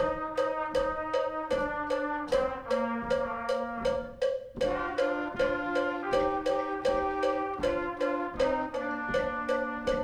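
School concert band playing: brass and woodwinds hold sustained chords that shift every second or two over a steady drum beat.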